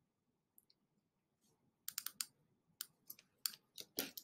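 Faint computer keyboard and mouse clicks. They begin about two seconds in with a quick run of three, then come singly while text is selected and typed.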